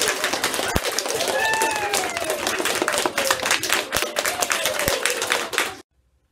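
Applause, several people clapping fast, with a long falling 'woo' cheer from one voice over it; it cuts off suddenly near the end.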